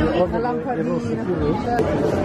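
People talking nearby, several voices chattering at once.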